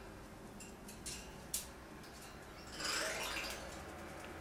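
Solomon Island eclectus parrot moving about on top of its metal cage: a few sharp clicks against the bars, the sharpest about a second and a half in, then a brief rustle about three seconds in.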